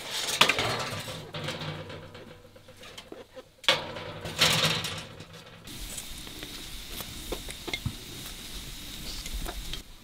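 A metal scraper scraping against the inside of a clay bread oven as flatbread is pried off its wall, in two loud rasping bursts near the start and again about four seconds in. After that comes a quieter stretch with small scattered clicks.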